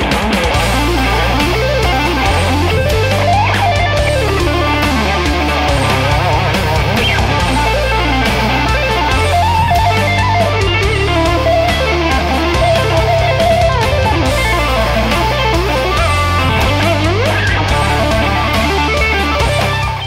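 Strinberg electric guitar with two single-coil pickups and a humbucker, played lead over a backing track with a steady bass line. The lines are fast and include two-handed tapping and a few sliding pitch bends.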